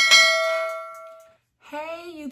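Notification-bell 'ding' sound effect of a subscribe-button animation: one bright bell chime struck at once, ringing out and fading away over about a second and a half.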